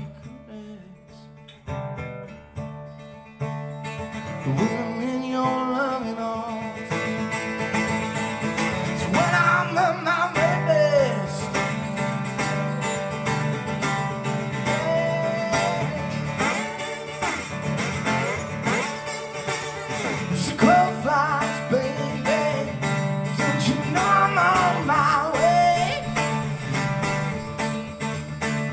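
Resonator guitar played live, quiet picked notes at first, then fuller playing from about three and a half seconds in, with lead notes that bend and glide in pitch over steady low notes.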